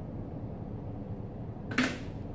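Steady low room hum, with one short, sharp noise near the end that is the loudest thing heard.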